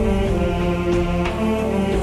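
Layered voices holding sustained chords without words, with sharp percussive hits, in an a cappella (no-instrument) Gulf wedding zaffa arrangement.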